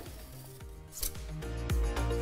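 A knife scraping faintly along the inside of a metal cake frame, then background music with a steady beat comes in about a second in and takes over.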